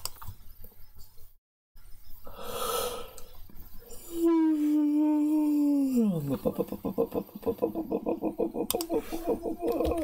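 A man yawning: a noisy breath in, then a long drawn-out voiced tone that holds and then falls steeply in pitch, trailing off into a creaky, buzzing voice.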